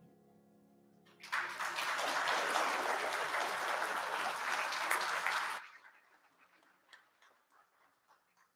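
Congregation applauding for about four seconds, starting about a second in and stopping abruptly.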